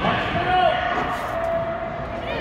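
Overlapping children's voices and calls echoing in a large gymnasium during an indoor soccer game, with one voice holding a long call near the middle.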